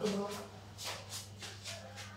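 Several soft rustling, shuffling noises over a steady low hum, with a faint voice in the background.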